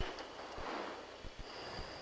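Steady rushing hiss on the test flight's radio and intercom audio. It cuts in suddenly and carries a faint thin high tone near the end.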